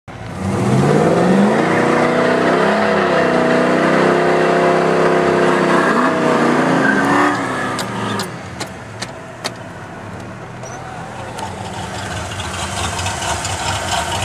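Car engine heard from inside the car, revving up over the first second and running hard at high revs for about six seconds, with a brief dip near three seconds. Around seven seconds the engine note drops away. A few sharp clicks follow, then a lower steady driving rumble that slowly grows louder.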